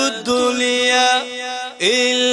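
A man chanting the sermon in a sung, melodic voice into a microphone, holding long steady notes, with a short break just before the end.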